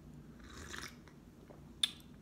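A person sipping hot tea from a mug: a soft slurping sip about half a second in, then a single short click of the lips or cup near the end.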